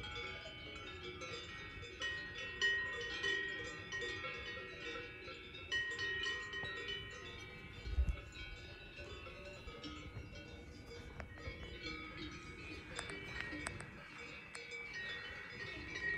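Cowbells on a herd of grazing cows, many bells ringing irregularly and overlapping at several different pitches. A brief low thump comes about halfway through.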